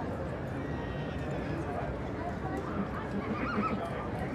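A Welsh Cob stallion whinnying with a high, quavering call near the end, over a steady murmur of voices from the ring and crowd.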